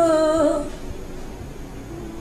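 A voice singing a long, wordless held note that ends about half a second in, leaving a quieter background.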